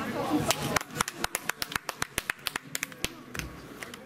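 Sparse applause from a small group of listeners: a few people clapping unevenly, with separate claps that thin out and fade near the end.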